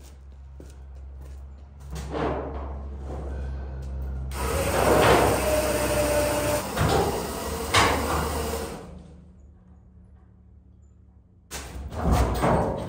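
A chain hoist is hauled by its hand chain, the chain rattling, as an aluminum boat hull is lifted and tipped onto its side, with metal scraping, creaking and knocks. It is busiest in the middle, with a sharp knock a few seconds before the end, over a low steady hum.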